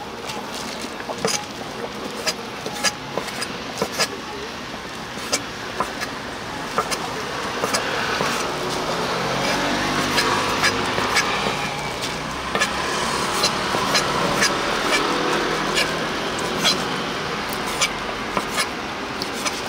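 Kitchen knife chopping cooked pig liver and lung on a wooden cutting board: sharp, irregular knocks of the blade striking the board, roughly once or twice a second. A low rumble swells through the middle.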